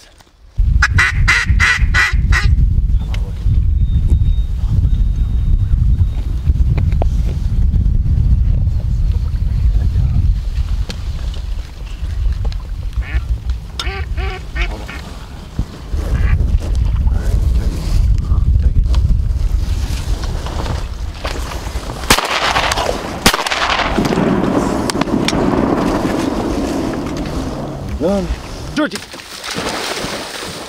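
Wind buffeting the microphone with a low rumble, under quick runs of duck quacks near the start and again about halfway through. Two sharp shotgun shots come about three-quarters of the way in, the second the louder, followed by splashing through shallow water.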